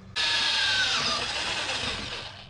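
Close-quarters electric drill drilling out a threaded hole at the car's firewall. It starts suddenly and runs steadily, with a whine that drops in pitch about halfway through.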